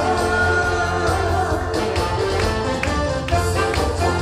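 Live Korean trot song: a woman sings into a microphone over a backing band with a steady beat. About halfway through, her voice gives way to an instrumental passage with sharp drum hits.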